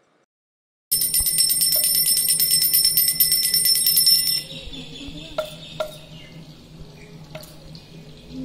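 Small brass puja hand bell rung rapidly, a fast even ringing that starts suddenly about a second in and lasts about three and a half seconds before dying away. A few light clicks follow.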